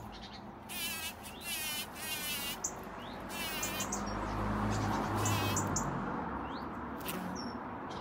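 Bumblebee buzzing close by at a flower, its hum wavering in pitch and loudest around the middle. Short high chirps and trills sound over it.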